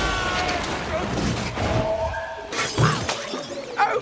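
Film sound effects of a crash with shattering debris, with pitched creature cries over it. Sharper impacts come near the end.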